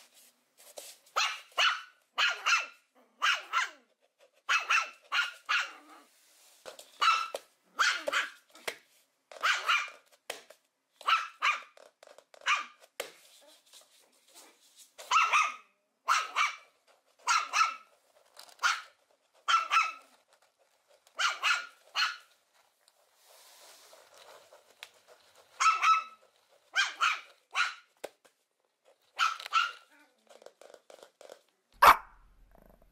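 A small puppy barking in play: short, high-pitched yaps, often two in quick succession, about one a second, with a pause of about three seconds near the end.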